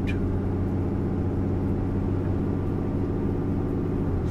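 Steady engine and road noise of a pickup truck heard from inside its cab while driving.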